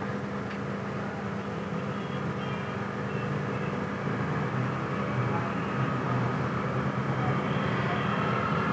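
Steady background hum and noise that swells slightly over the seconds, with a faint click about half a second in.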